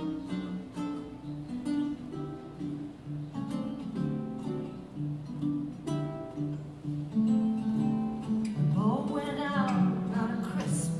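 Archtop guitar and baritone ukulele playing the intro to a swing song, with plucked single notes and chords at a moderate tempo. A voice begins singing near the end.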